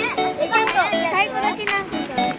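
Children's excited high voices over background music with a light, regular beat.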